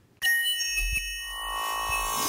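Electronic logo sting: after a brief silence, shimmering chime-like synthesizer tones start suddenly over a low drone, with a steadier mid tone joining about a second in.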